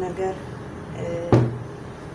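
A single sharp knock about two-thirds of the way through as a bowl of water is set down on a wooden table, with short snatches of a voice before it.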